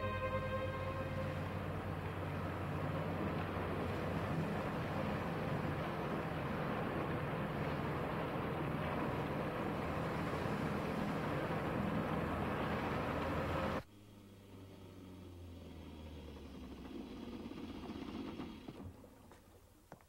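Heavy rain falling as a steady, dense hiss. It cuts off abruptly about 14 seconds in to a quieter low rumble that fades away near the end.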